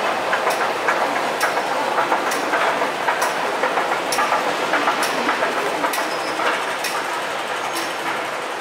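Metro station interior ambience: a steady hubbub, with a sharp click repeating evenly about once a second.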